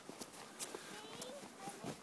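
Faint footsteps crunching in snow, a few irregular steps, with a small child's voice faint in the background.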